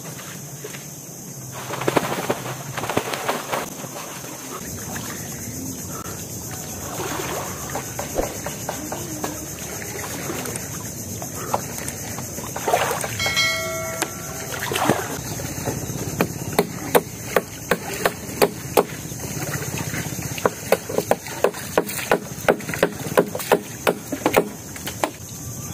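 Water sloshing and splashing around a person wading chest-deep up to a bamboo raft. In the last third, a quick run of sharp clicks comes about two or three a second, and a brief pitched call sounds about halfway through.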